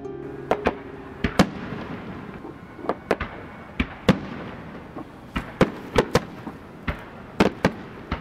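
Firecrackers going off: a string of sharp, irregularly spaced bangs, about two a second, over a hiss of background noise. Music ends just as the bangs begin.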